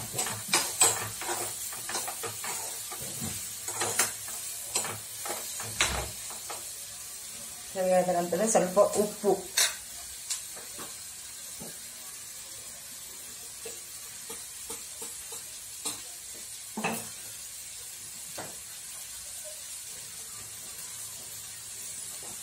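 A metal spoon stirring chopped vegetables in a hot kadai on a gas stove, scraping and knocking against the pan over the first several seconds while the vegetables sizzle. After that the frying settles into a steady, quieter sizzle, with a couple of clinks.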